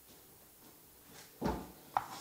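Quiet room, broken about one and a half seconds in by a single short thump, then a sharp tap of chalk against the blackboard near the end.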